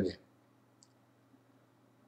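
Near silence: room tone with a faint steady low hum, and one faint, very short click about a second in.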